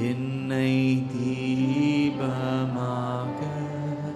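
Slow, chant-like worship singing with long held notes that change pitch every second or so.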